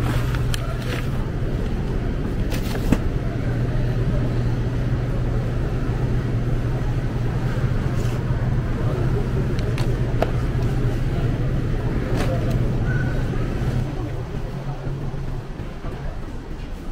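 Steady low hum of a supermarket's background noise, with a few short clicks and knocks as packages on the shelf are handled. The hum fades away about two seconds before the end.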